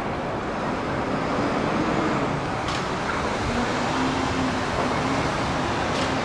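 Steady city street traffic noise, vehicles passing on the avenue. A short hiss sounds a little before the middle, and a low engine hum joins about halfway through.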